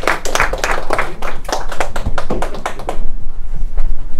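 Audience applauding, the clapping stopping abruptly about three seconds in.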